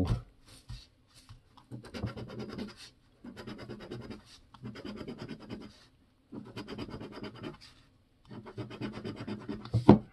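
A coin scraping the coating off a lottery scratch-off ticket in about five short bursts of rapid back-and-forth strokes, one for each number spot in a row, with brief pauses between.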